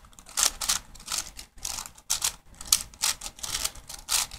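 A 6x6 V-Cube puzzle's plastic layers clicking and clacking as they are turned quickly by hand, an irregular run of sharp clicks several times a second.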